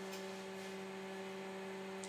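Steady, unchanging hum from running electronic test equipment: one low tone with fainter overtones above it.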